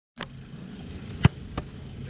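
A football struck hard about a second in, then a softer second thud, over a faint steady low hum.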